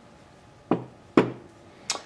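Three light knocks, about half a second apart, as a small metal automotive-type thermostat is handled and set down on a towel-covered workbench.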